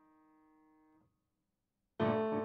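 Faint tail of a held piano chord from a silent-film accompaniment, dying away and stopping about halfway through, followed by silence.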